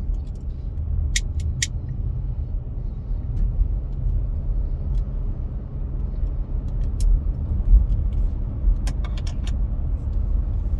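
Low, steady drone of a car's engine and tyres on the road, heard inside the cabin while driving. A few short sharp clicks stand out: two about a second in, one later, and a quick cluster near the end.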